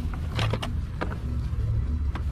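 A few sharp plastic clicks and knocks as a cassette storage case is handled and its lid opened, over a steady low rumble.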